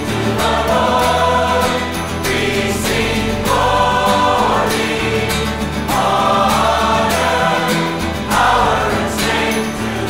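Christian worship song: a choir singing in long phrases over instrumental backing with percussion.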